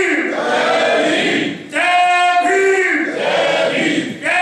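Slogan chanting in call-and-response: a man at the microphone shouts a drawn-out line and the crowd shouts its reply back in unison, twice over.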